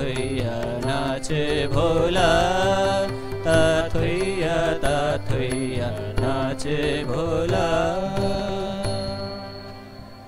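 Male voices singing a devotional song in chorus to harmonium accompaniment, with evenly spaced percussion strikes; the music fades out near the end.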